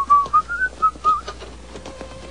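A person whistling a short, casual tune of about six notes that steps gently upward in pitch and stops after about a second and a half.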